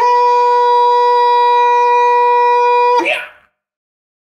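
A single long, steady wind-instrument note, held level at one pitch for about three seconds, then cut off abruptly.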